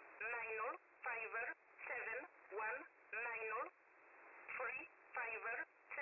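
Shortwave number station E11 heard through a radio receiver: a voice reading out digits one at a time in English, about eight words in six seconds, evenly spaced. The sound is narrow and tinny, like a telephone line, with steady radio hiss between the words.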